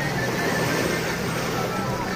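Busy beach ambience: music and many people's voices over a steady low hum.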